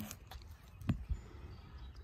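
A single thud about a second in, the iron shot put landing on the turf, over a low rumble of wind on the microphone.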